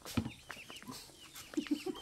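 Chickens clucking in short scattered calls, with a quick run of about four low clucks near the end.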